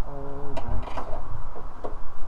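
A short, steady hum of a voice straining, then a few light clicks and knocks of a hand tool working the bottom of a steel van door, over a low rumble of wind on the microphone.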